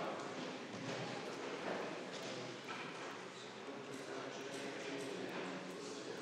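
Faint, indistinct murmur of voices in a large council chamber.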